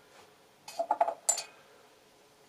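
A few quick clicks and a scrape as a light is struck for a cigarette, one sharp strike the loudest, and the flame does not catch.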